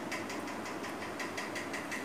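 Steady faint background hum with no distinct event.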